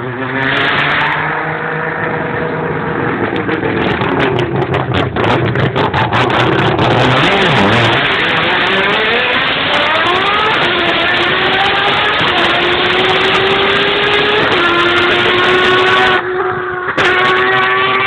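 Race car with a three-rotor Mazda 20B rotary engine accelerating hard. Its pitch climbs steadily in the second half and drops at two upshifts, with sharp crackles in the first seconds and again near the end.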